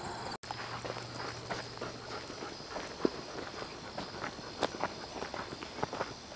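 Footsteps walking on a gravel trail: irregular short clicks and scuffs, a few louder than the rest. The sound cuts out completely for a moment about half a second in.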